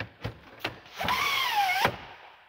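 Retractable cargo-area cover being moved by hand: a few light clicks, then about a second of sliding and rubbing with a squeak that wavers in pitch, ending in a click.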